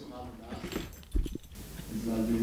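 Indistinct voices in a room, broken just after a second in by a quick cluster of three short, dull thumps.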